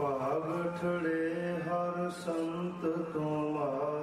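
A man chanting in a slow, sustained melodic voice, holding long notes that step up and down in pitch. It comes in suddenly at the start, with a brief hissed consonant about two seconds in.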